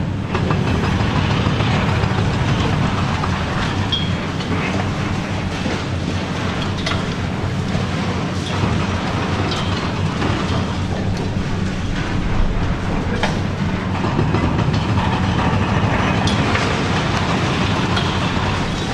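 High-reach demolition excavator with a telescopic boom, its diesel engine running steadily while it works, with a continual crackle and crunch of concrete and debris breaking away and falling from the silo top. A brief high squeal comes about four seconds in.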